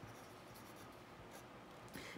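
Pencil writing a word by hand on a paper form: a faint scratching of graphite on paper in short strokes.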